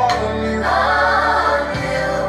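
Live gospel song: voices singing with choir backing over a band.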